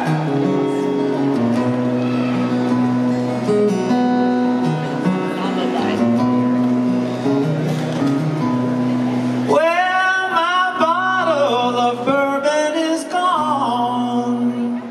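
Live solo acoustic guitar playing an instrumental passage between verses. About ten seconds in, a high wordless voice joins over the guitar for a few seconds.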